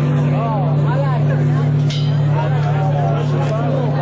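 A live band's sustained low drone note holds steadily through the PA, with voices shouting and singing over it between song lines.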